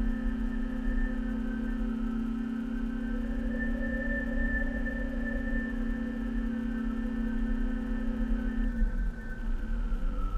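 A steady hum made of several held tones over a constant low drone, the upper tones wavering slightly. Near the end the tones slide down in pitch and break up for about a second before returning.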